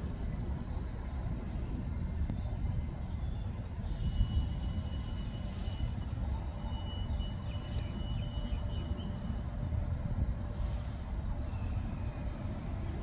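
Steady low outdoor rumble, like distant traffic. A thin, high, steady tone sounds twice for a few seconds each, around the middle.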